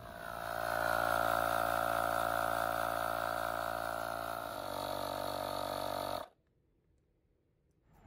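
AstroAI cordless tire inflator's compressor running steadily as it pumps a trailer tire from about 38 toward 50 PSI on its 20 V battery, which is down to one bar. The sound cuts off suddenly about six seconds in.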